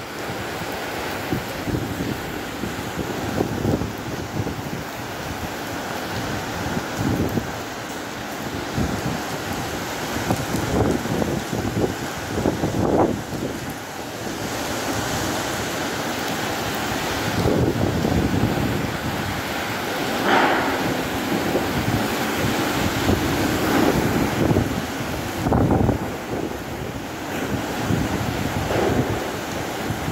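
Typhoon wind gusting through trees with driving rain, the gusts buffeting the microphone in loud surges, strongest about two-thirds of the way through.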